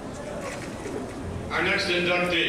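Low hall room noise, then a man's voice over the podium microphone's public-address system begins about one and a half seconds in.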